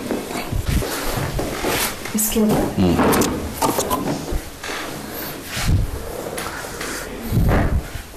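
A few short, sharp clicks and knocks during a chiropractic adjustment of a patient on a treatment table, among low voices.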